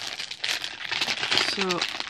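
Packaging of a novelty stretch toy crinkling as it is handled and opened by hand, a dense run of irregular crackles.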